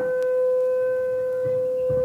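Electric guitar feedback through a stage amplifier: one loud tone held at a single steady pitch, with fainter overtones above it.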